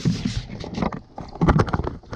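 Irregular knocks, clicks and rustles of a handheld camera being picked up and handled, loudest about one and a half seconds in.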